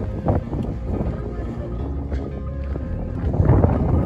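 Wind rumbling on the microphone, with background music; it grows louder about three seconds in.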